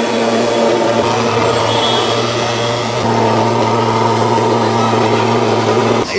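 Thermal mosquito-fogging machines running while blowing out insecticide fog: a steady, loud, buzzing engine drone with a strong low hum and a hiss over it.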